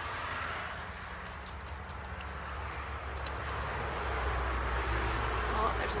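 Wind buffeting the microphone: a low rumble that builds through the second half, over a steady hiss.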